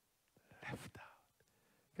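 Near silence, broken about half a second in by a few quiet, breathy words from a man.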